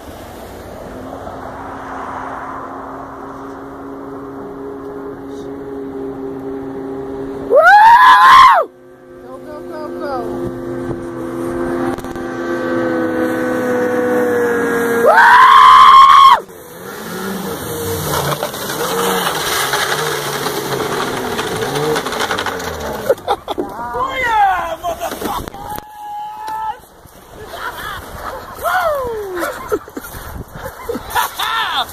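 Ski-Doo 600 X snowmobile engine running hard as the sled skims across open water, its drone growing louder and climbing slightly in pitch as it comes closer. Two short, very loud shouts ring out, about 8 seconds in and again about 15 seconds in.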